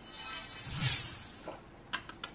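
A bright, shimmering chime-like sound effect that starts suddenly and fades over about a second, followed near the end by a few quick clicks, accompanying an animated on-screen 'like' button.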